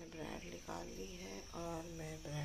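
A cricket's steady high-pitched trill, with a voice talking indistinctly underneath, which is the loudest sound.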